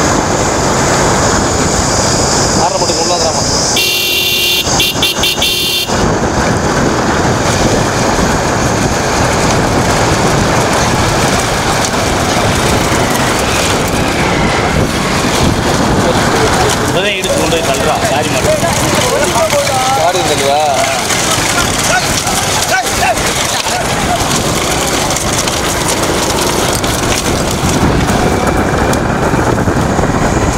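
Loud, steady rushing noise of wind on the microphone and a motorcycle running at speed alongside racing bullock carts. A horn sounds for about two seconds near the start, and voices shout about two-thirds of the way through.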